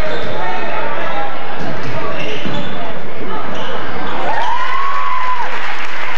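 Gym noise at a basketball game: a basketball bouncing on the hardwood floor amid spectators' overlapping voices, with one long held call from the crowd about four seconds in.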